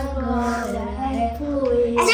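A young girl singing a drawn-out phrase, her voice held in long notes that slide slowly lower in pitch.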